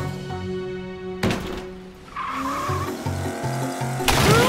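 Cartoon soundtrack: background music with toy race-car sound effects, a sudden hit about a second in and a tyre-squeal effect just after halfway.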